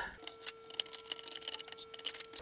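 Faint, irregular small clicks and ticks of a plastic rail button being fitted and its screw started with a screwdriver into a weld nut in a cardboard body tube, over a faint steady hum.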